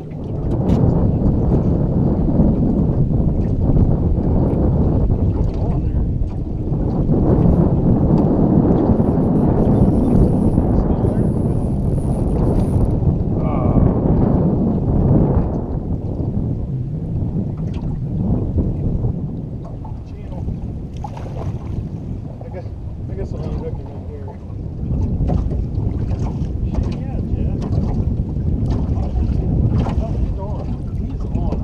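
Wind buffeting the microphone of a camera on an open boat: a steady low rumble that eases slightly in the second half, with water slapping against the hull.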